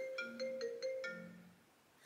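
Mobile phone ringtone playing a short melody of bright, pitched notes, stopping about a second and a half in as the call is answered.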